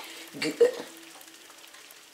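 A sealed can of evaporated milk shaken by hand, the milk sloshing and swishing inside it.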